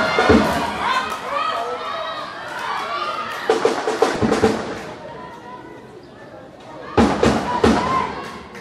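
Cheering drums beaten in short groups of two or three beats, with voices shouting and chanting over them. The beat groups come near the start, about halfway through and near the end, and the voices are quieter in between.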